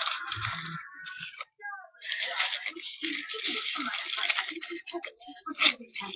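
Aluminium foil crinkling and rustling as it is wrapped by hand around a small stack of blocks, mostly from about two seconds in to about five.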